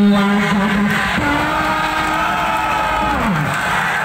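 Loud, drawn-out shouts from people around a volleyball court as a point is played out and won. The shouts are held calls one after another, and the last one falls away about three seconds in.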